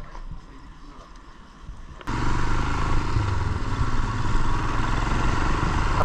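Motorcycle on the move: engine running under steady wind and road rush, recorded close on the bike. It starts abruptly about two seconds in, after a quieter stretch of faint outdoor background.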